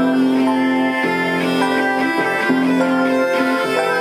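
Instrumental music: layered, sustained pitched notes that shift to new pitches about every half second to a second, at a steady level.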